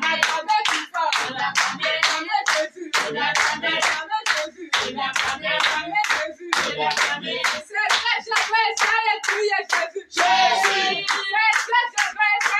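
A congregation clapping hands in a steady rhythm, about three claps a second, while singing a praise song together.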